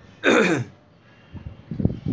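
A man clearing his throat once, a short rasping burst whose pitch falls, then a few soft low sounds near the end.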